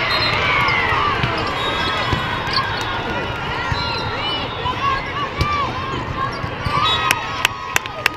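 Indoor volleyball play in a large, echoing hall: sneakers squeak on the court and the ball thuds now and then, under a steady hubbub of many voices. Sharp hand claps start near the end as the rally ends.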